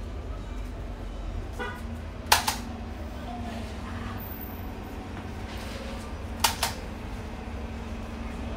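Two sharp double clicks, about four seconds apart, over a steady low hum.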